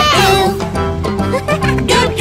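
Bouncy children's song music with a steady beat, with a wavering high-pitched sound in the first half second.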